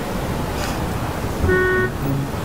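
Steady road and engine noise inside a moving car, with a short horn toot about one and a half seconds in.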